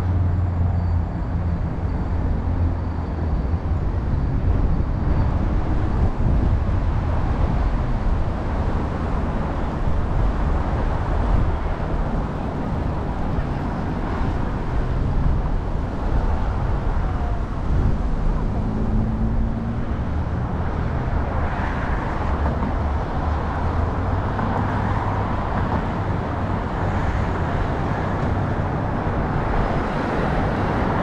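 City street traffic: a steady low rumble of cars and engines going by on the road.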